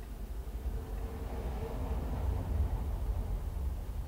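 Low, steady background rumble with a faint hiss: room tone, with no distinct event.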